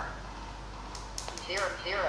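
A lull between spoken readings, with a low steady hum. There is a single soft click about a second in, then faint, muttered male speech near the end.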